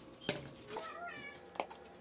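A cat meows once, a short call about a second in, with two light knocks just before and just after it.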